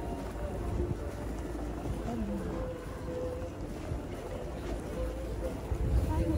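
Outdoor street ambience: a low steady rumble with faint voices of passersby talking in the distance.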